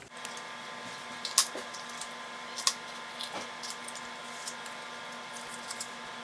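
Kitchen knife slicing a green bell pepper on a plastic cutting board: a few sharp knocks of the blade on the board, the loudest about a second and a half in, over a steady hum.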